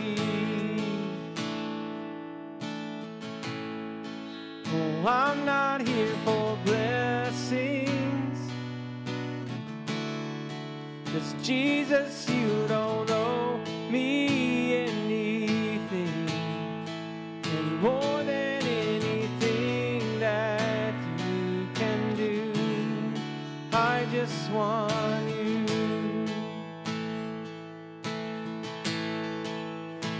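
Music: an acoustic guitar strums slow chords while a man sings a drawn-out melody over it, in a slow worship song.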